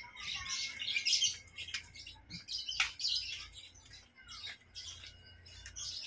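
Small birds chirping in quick, repeated bursts, with one sharp click about three seconds in.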